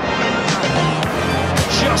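Background music with held bass notes that shift in pitch about a second in, under a dense wash of sound; a commentator's voice comes in near the end.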